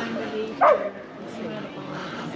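A single short dog bark just over half a second in, falling in pitch, over background crowd chatter.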